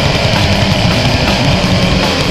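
Death metal band playing from a 1990s demo recording: heavily distorted guitars, bass and drums in a dense, steady wall of sound.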